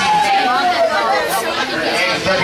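Spectators chattering and calling out around a wrestling ring in a hall, with one voice holding a long falling shout in the first second.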